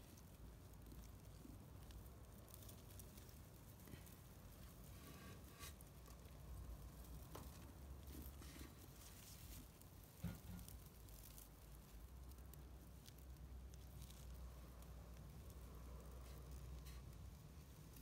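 Near silence with faint scattered clicks and crunches from a small tortoise biting and tearing at a hand-held leaf, with one slightly louder knock about ten seconds in.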